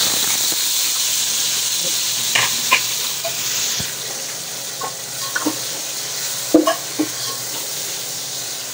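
Chopped tomatoes sizzling as they go into hot oil and fried onions in a metal cooking pot, stirred with a slotted metal spoon that clinks against the pot now and then. The sizzle is loudest in the first few seconds and then eases off.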